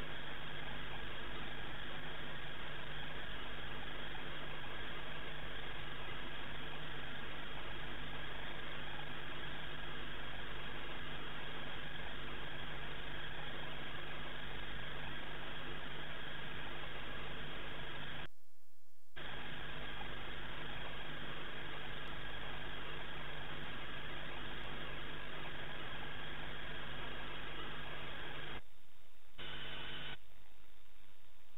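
A steady droning hum with hiss, with no change in pitch or level, cutting out completely for about half a second twice: about two-thirds of the way in and just before the end.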